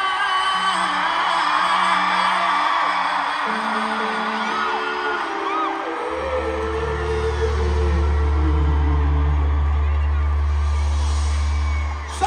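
Live band in an arena holding sustained closing chords, with a deep bass note coming in about halfway through and held, over a crowd cheering and whooping.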